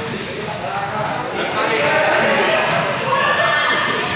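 Several young people's voices talking and calling out over each other, echoing in a large sports hall, with thuds on the hard floor. The voices grow a little louder about a second and a half in.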